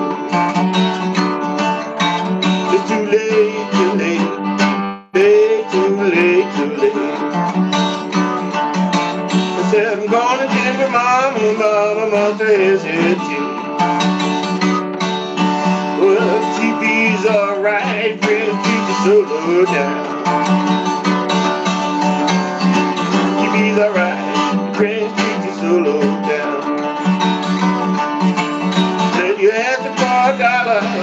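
Twelve-string acoustic guitar played in a steady blues accompaniment, with a man singing over it. The sound drops out briefly about five seconds in.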